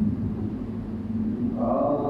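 A steady low rumble, and near the end a voice begins chanting in long held notes.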